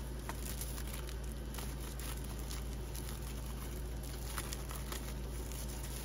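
Faint crinkling and light ticks of a clear plastic cellophane sleeve being handled, over a steady low hum.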